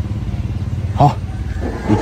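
A small engine idling steadily with a low, quickly pulsing hum.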